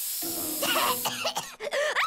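A cartoon aerosol hairspray can hissing in a long burst, fading about a second in. Overlapping it and running on, a girl coughs and sputters in the spray cloud.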